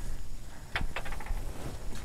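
Wind rumbling on a phone's microphone outdoors, with a few faint clicks about a second in.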